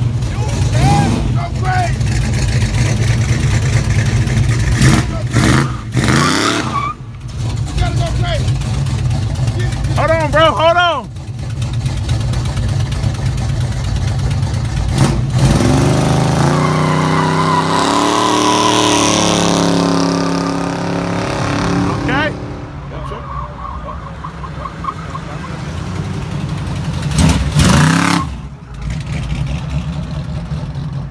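Chevrolet Monte Carlo SS V8 running as the car rolls slowly by and pulls away, its engine note rising and then falling again about two-thirds of the way through, with a steady low rumble throughout.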